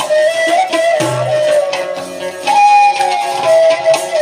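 Egyptian Sufi madih music without singing: a sustained melody line sliding between held notes over hand percussion. A jingled frame drum (riq) and drums play, with a deep drum beat about a second in.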